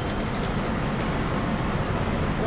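Steady background noise with a low rumble and hiss, like road traffic, and a few faint clicks.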